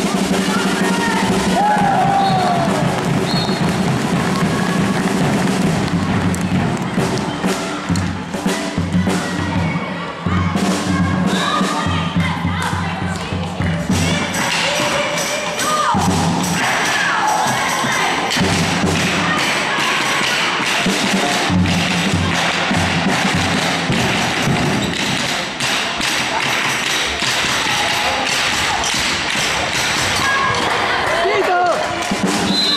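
Spectators' drum beating in a handball hall, with crowd shouting and cheering.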